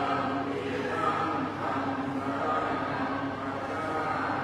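A group of voices chanting Buddhist verses in unison, a steady recitation on long, held, level notes.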